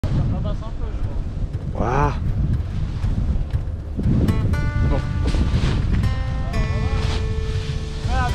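Wind buffeting the microphone throughout, with a short spoken "ah" about two seconds in. About four seconds in, music with held notes comes in over the wind.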